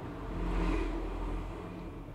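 A person taking a long sip from a ceramic mug: one drawn-out swell of noise that rises and fades over about a second.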